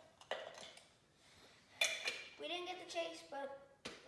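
A metal Funko Soda collectible can and its vinyl figure being handled: a short scrape near the start and a sharper clink a little before two seconds in.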